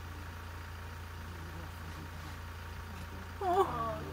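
Steady low hum of a game-drive vehicle's engine idling. A person's voice sounds briefly near the end.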